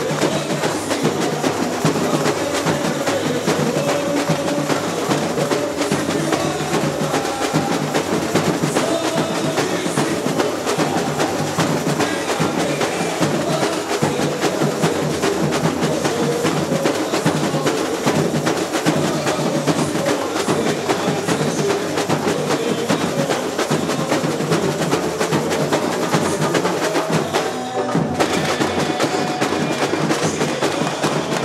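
Samba percussion of a carnival street bloco's bateria playing: dense drums and snare-like strokes in a steady samba rhythm, with a brief break about two seconds before the end.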